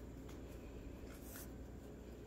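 Faint rustle and scratch of acrylic yarn rubbing against fingers and a crochet hook as the magic circle's yarn tail is pulled through, with a few soft brushing strokes, the clearest about a second in.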